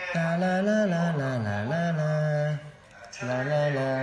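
A man's voice drawn out in one long, sustained note that wavers, dips low about a second and a half in, then holds steady; after a short break, a second, shorter held note starts a little after three seconds in.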